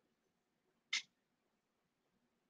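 A single short, high-pitched sound about a second in, over the quiet tone of a hushed room.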